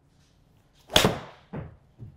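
Titleist T150 iron striking a golf ball off a hitting mat: one sharp, loud crack about a second in, from a solidly struck shot, a 'good rip'. About half a second later comes a second, duller thud.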